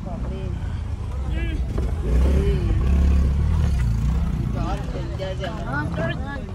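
Low rumble of a car driving on a rough dirt road, heard from inside the cabin, swelling louder about two seconds in and easing off near the end. Voices talk in the car over it.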